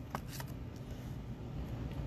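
Trading cards being handled: a few faint clicks and rustles, two of them in the first half second, over a low steady hum.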